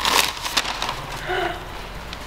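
Gift wrapping paper crinkling and tearing as a present is unwrapped, loudest in the first half-second and then quieter handling noise.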